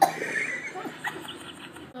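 Faint, broken children's voices with a short sharp click at the very start.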